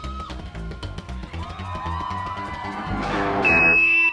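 Live rock band playing: upright bass and electric guitars over a steady beat, with a sustained high tone coming in near the end.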